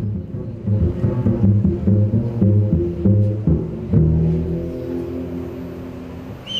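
A jazz combo playing live: a run of short low notes, then about four seconds in a held chord that slowly dies away.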